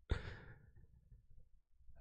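A man's single sigh, breathed out into a close microphone, fading away within about a second.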